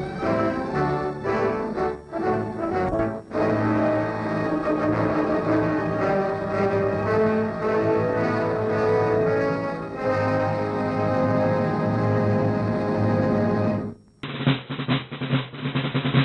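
Orchestral closing music with a drum roll and timpani, sustained chords held under it. About two seconds before the end it cuts off abruptly and a different, duller-sounding piece with sharp drum hits begins.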